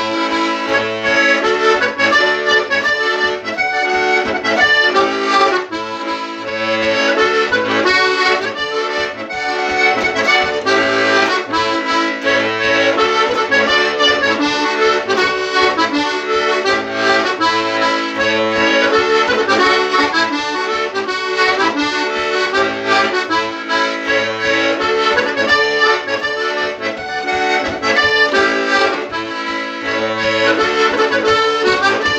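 Button accordion playing a jig: a quick, continuous melody over a bass that pulses on and off in rhythm.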